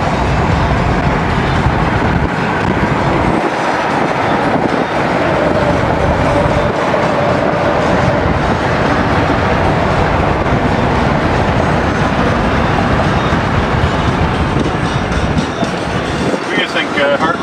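Steady, loud tyre and road noise from a car at highway speed crossing a suspension bridge deck, heard from inside the car.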